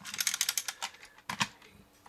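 Rapid clicking and light rattling of a plastic 1985 Kenner M.A.S.K. Jackhammer toy truck being handled and moved across a hard surface. A few louder clicks come a little later, and then the clicking dies away.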